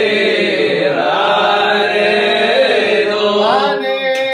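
Several men chanting a prayer together, their voices overlapping; near the end a single voice holds a steady note.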